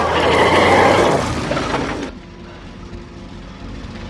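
Pickup truck braking hard on a dirt road, its tyres skidding on gravel in a loud, gritty rush that stops abruptly about two seconds in. A quieter steady engine sound follows.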